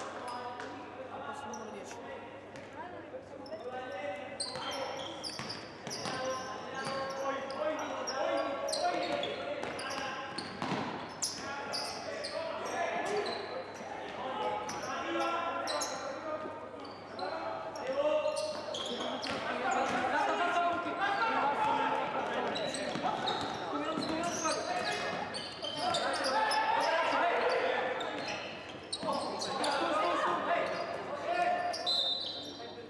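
A basketball being dribbled and bouncing on the court in a large sports hall, with short sharp knocks. Players and coaches shout and call out across the court throughout.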